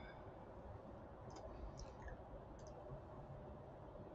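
A few faint clicks of a computer mouse, spaced over about a second and a half, over near-silent room tone.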